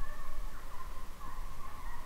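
Deer-hunting hounds baying on a drive: a long, wavering howl that runs on without a break.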